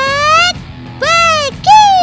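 Comic cartoon-style sound effect: a string of smooth, pitched glides, one rising, one arching up and down, then one falling steeply near the end.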